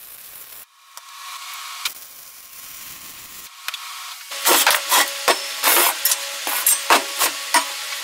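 Welding arc on a steel-tube frame, crackling and hissing steadily for a few seconds with a short break. Then, about halfway through, a louder quick run of sharp knocks with ringing tones, about two to three a second.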